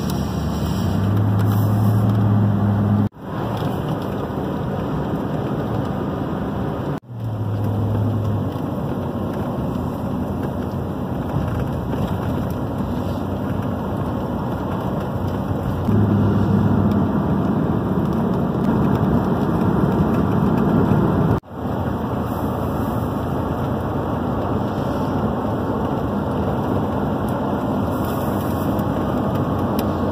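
Steady road and engine noise heard inside a moving car's cabin, with a low hum that comes and goes. The sound breaks off sharply three times for a moment.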